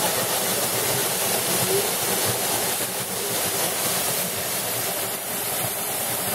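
Caledonia Falls, a waterfall pouring down a rock face into a shallow pool close by: a steady, unbroken rush of falling and splashing water.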